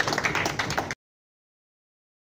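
Audience applauding, cut off suddenly about a second in, followed by silence.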